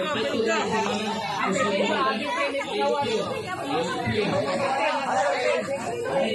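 Crowd chatter: many people talking at once in overlapping voices, with no single speaker standing out.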